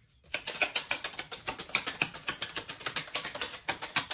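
Tarot deck being shuffled by hand: a quick, even run of crisp card clicks, many to the second.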